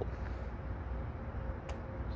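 Low, steady outdoor background rumble with a single faint click near the end.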